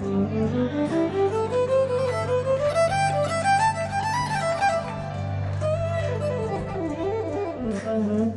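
Solo violin playing a melodic line that climbs in steps over the first four seconds and then winds back down, over steady held bass notes.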